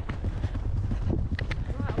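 A horse's hoofbeats on a mown grass track, picked up from the saddle, over a steady low rumble.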